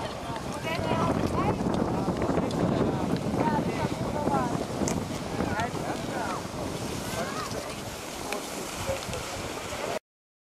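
Wind buffeting the microphone over outdoor ski-slope ambience, with many distant voices calling and chattering throughout.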